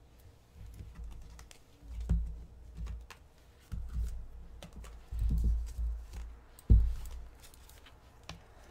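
Hands handling a deck of tarot cards on a tabletop: a run of small clicks and soft thumps as the cards are tapped and worked, the loudest thump near the end.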